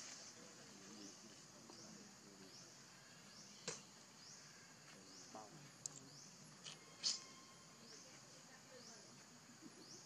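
Quiet outdoor ambience: a faint high, rising chirp repeats about every three-quarters of a second throughout, with a few sharp clicks, the loudest about seven seconds in.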